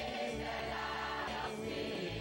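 Gospel worship music: voices singing held notes together over instrumental backing with a steady bass.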